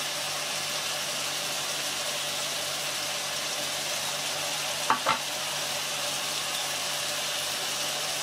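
Chicken hearts and sliced onion frying in oil in a pan: a steady, even sizzle. One brief, louder sound cuts in about five seconds in.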